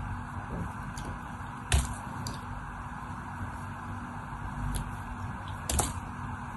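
Craft-knife blade shaving strips off a bar of soap: soft scraping with a few small clicks, and two sharp cracks as pieces snap off, one about two seconds in and one near the end, over a steady low background hum.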